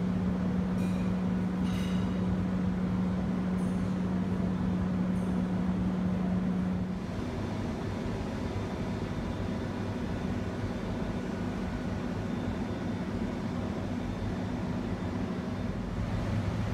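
Steady mechanical room hum with a low droning tone over an even rumble, like refrigeration and ventilation machinery; about seven seconds in it drops a little in level and the tone changes.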